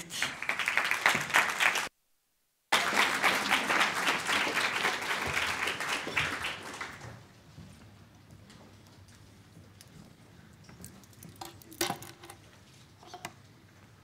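Audience applauding, broken off briefly about two seconds in and dying away about seven seconds in. A few faint knocks follow near the end.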